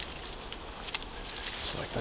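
Scattered light clicks and twig rustling as a licking branch is handled and wired to an overhanging tree limb by gloved hands.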